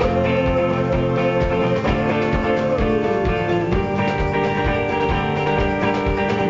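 Live rock band playing: hollow-body electric guitar strummed over a steady drum-kit beat, with a melodic line gliding above.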